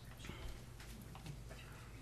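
Quiet meeting-room tone with a steady low hum and a few faint, scattered clicks and rustles.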